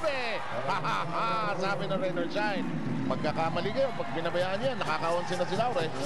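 Mostly speech: a man talking over the steady crowd noise of a basketball arena.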